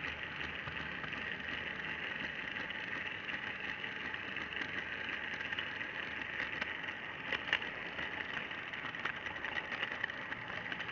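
Model train's motor and wheels running along the track, heard up close from the train itself: a steady whirr with sharp clicks as the wheels cross rail joints and pointwork, a cluster of them about seven and a half seconds in.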